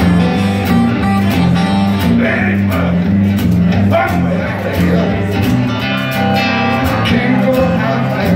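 Acoustic guitar playing a repeating blues bass riff, amplified live, while a man sings over it.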